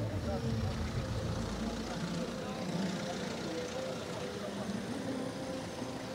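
Black Mercedes-Benz S-Class sedan rolling slowly past at walking pace, a low engine and road rumble for about the first two seconds that then fades, with a crowd of voices chattering around it.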